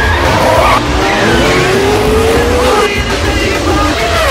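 Open-wheel race car engines running at high revs with a low rumble and tyre squeal. One engine note climbs slowly for about two seconds, then drops away.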